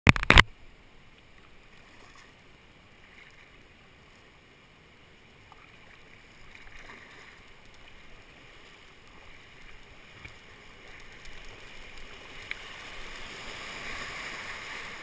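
Whitewater rapids rushing, a steady hiss that grows gradually louder as the kayak closes on the rapid, heard from a kayak-mounted camera. A brief loud thump at the very start.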